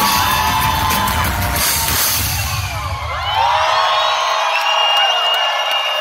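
A live rap song's beat plays loud over the concert PA, heavy in the bass with drum hits, and cuts out about three seconds in. After that a large crowd is left cheering, shouting and whooping, with one long high held note near the end.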